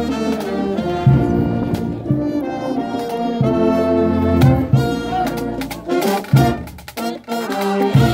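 Brass band playing a tune, tubas carrying a bass line that pulses about once a second under the higher brass. The sound drops briefly about six and a half seconds in, then the band comes back in.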